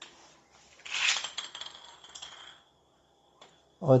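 3D-printed plastic spinning top launched onto a ceramic tile floor: a clattery rattle about a second in, then a thin, steady, high whirring ring as it spins, which stops shortly before the end.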